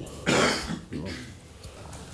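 A man clears his throat once, a short loud rasp.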